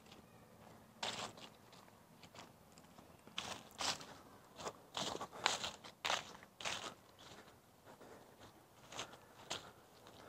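Footsteps crunching through dry fallen leaves, quiet and irregular, with short pauses between groups of steps.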